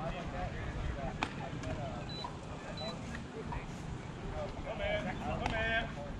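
Ballfield ambience: faint, scattered voices of players calling out over a steady low rumble, with one sharp knock about a second in and a louder call near the end.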